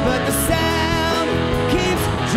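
Live rock band playing a song, with electric guitar, bass guitar, drums and a Nord stage piano, with gliding pitched notes through the passage.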